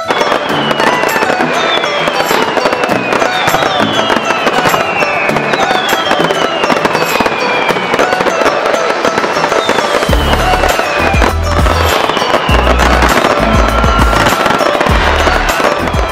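Fireworks banging and crackling densely over music, with repeated falling whistles about once a second. A deep bass beat comes in about ten seconds in.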